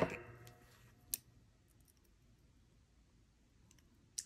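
Steel jewelry pliers clicking against a small metal jump ring and chain: a sharp metallic click with a brief ringing decay at the start, then a smaller click about a second in.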